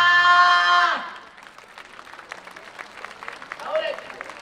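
Dance music ends on a long held note that cuts off suddenly about a second in. Scattered audience clapping follows, and a voice calls out briefly near the end.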